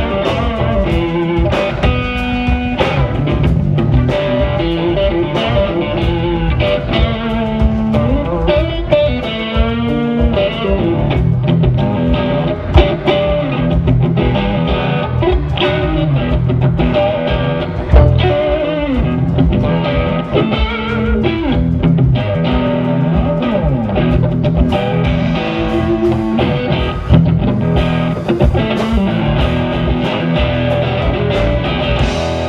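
Live blues-rock band playing: electric guitar lead with bent, wavering notes over bass guitar, keyboard and drum kit.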